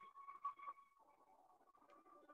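Near silence, with a faint steady high tone that fades out about a second in.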